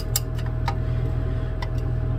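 Glass stirring rod clinking against the inside of a glass beaker of liquid as it is stirred: a few light, irregular clicks over a steady low hum.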